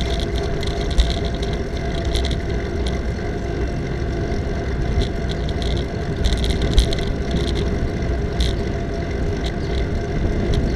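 Wind and road rumble on a camera mounted on a moving bicycle, with short light rattles now and then as it rides over the pavement.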